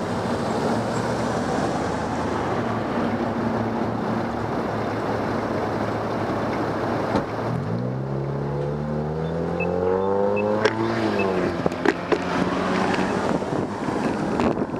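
Street traffic at an intersection, a steady hum at first; about halfway through, a car's engine pulls away from the green light, its pitch rising for a few seconds and then dropping. A few sharp clicks come near the end.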